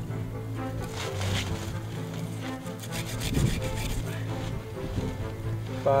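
Background music over a hand saw cutting through the trunk of a small fir tree.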